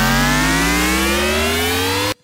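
A designed cinematic riser sound effect playing back: a stack of tones gliding steadily upward in pitch over a bright hiss and a low, steady drone.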